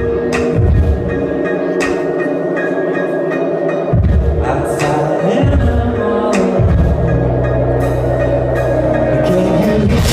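Amplified live band playing a song's opening: held keyboard chords, joined about four seconds in by a low electric bass line that settles into steady long notes near the end.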